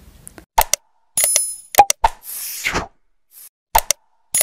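Animated subscribe end-card sound effects: a pair of sharp pops, a short bright bell-like ding, more clicks and a whoosh, with the sequence starting over near the end.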